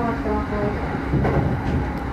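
Commuter train running, heard from inside the car: a steady low rumble, with a single knock a little past a second in.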